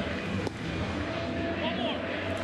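Large baseball stadium crowd cheering and applauding steadily in a standing ovation.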